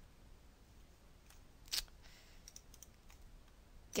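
A computer mouse click about two seconds in, with a few much fainter ticks around it, over quiet room tone.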